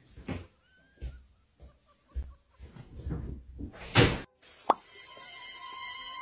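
A cat moving about on a bed: several soft thumps and rustles, with one louder, sharper thump about four seconds in. Background music starts near the end.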